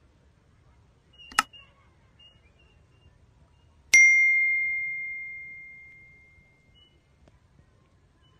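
Subscribe-button animation sound effect: a short click about a second and a half in, then a single bell ding about four seconds in, as the cursor clicks the notification bell, ringing out and fading over about three seconds.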